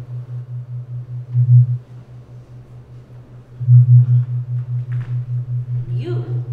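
A low, steady hum pulsing about four to five times a second, swelling louder twice, about a second and a half in and again near four seconds.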